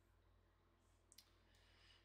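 Near silence: room tone with a faint hum, and a single faint sharp click a little over a second in.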